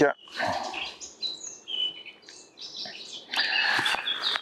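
Birds chirping and whistling in short, high phrases, with a brief rustle near the end.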